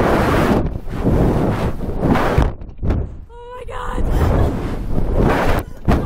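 Two girls screaming in repeated loud bursts while being flung on a reverse-bungee slingshot ride, with heavy wind rushing over the microphone; about three and a half seconds in, one lets out a short, high-pitched shriek.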